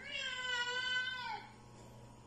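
A grey tabby-and-white domestic cat gives one long meow lasting about a second and a half, holding its pitch and dropping at the end.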